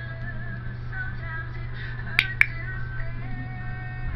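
Soft background music with held notes, and about two seconds in a pet-training clicker gives two sharp clicks in quick succession, marking the cat's spin as correct.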